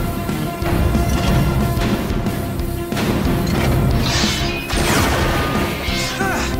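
Action-score music with several crash sound effects of giant robots fighting and striking each other.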